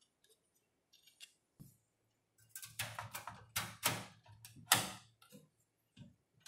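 Handling clicks and knocks as a graphics card is pushed into the motherboard's PCI Express slot and against the PC case's metal frame. A few faint ticks come first, then a run of sharper clicks and knocks from about two and a half to five seconds in, as the card is seated.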